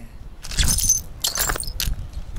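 Bright jingling clatter in three short bursts, in step with someone starting to walk.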